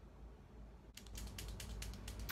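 A quick run of light clicks and taps from makeup items being handled, starting about a second in, as a brush is set down and an eyeliner pen is picked up.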